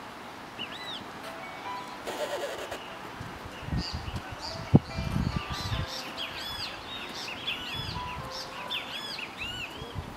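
Birds chirping: a run of short, arched chirps repeating several times a second from about four seconds in, over steady outdoor background noise. Dull low thumps come and go under them, with one sharp click near the middle.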